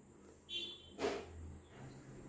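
Faint room sound with a short high-pitched chirp about half a second in, followed by a sharp click about a second in.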